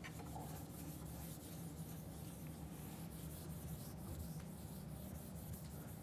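Whiteboard eraser rubbing across a whiteboard in repeated strokes, faint, over a steady low room hum.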